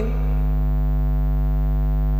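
Steady electrical mains hum with a buzzy stack of overtones, loud and unchanging, picked up in the recording.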